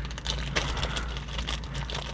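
Small plastic clicks and crinkling from a packet of zip ties being handled, a rapid irregular run of little crackles.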